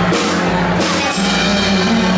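Live band playing loud: drum kit with repeated cymbal hits over a steady bass line.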